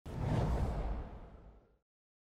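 Intro whoosh sound effect with a deep low end, starting at once, swelling briefly and fading away over nearly two seconds.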